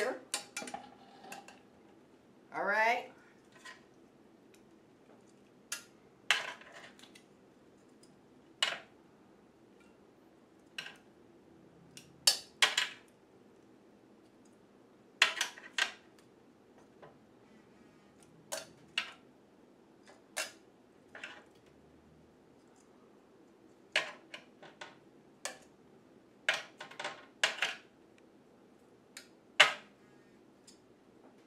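Metal kitchen tongs clinking against a broiler pan and a slow cooker as chicken wings are picked up and dropped in one at a time. The clinks are short and sharp, come irregularly every second or two, and bunch together near the end.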